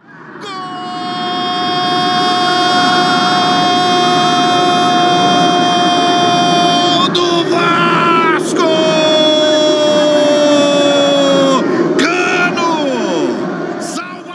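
A Brazilian TV football commentator's drawn-out goal shout: one long held "Goooool" of about six seconds, then a second held call of about three seconds that sags slightly in pitch, with excited speech near the end.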